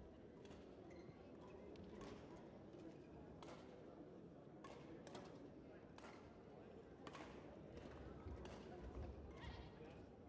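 Near silence: faint sports-hall room tone with scattered faint sharp taps and clicks.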